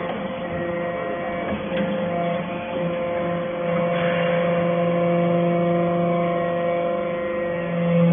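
Hydraulic chip-briquetting press running with a steady low hum, with a higher tone that comes and goes and a few light clicks.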